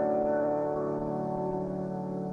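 Piano chord held and slowly fading away, in Persian classical music in dastgah Mahour.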